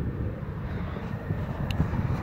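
Low, steady background rumble with no distinct event.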